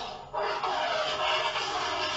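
A phone ringing: its ringtone plays in spans of about two seconds, with a short break just after the start.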